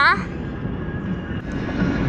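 Steady low rumble of a moving car, heard from inside the cabin.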